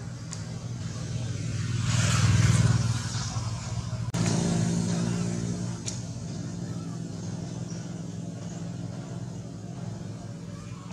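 Motor vehicle traffic passing on the road: a steady low engine hum throughout, swelling to its loudest about two to three seconds in as a vehicle goes by. A second engine note starts abruptly about four seconds in and fades out about two seconds later.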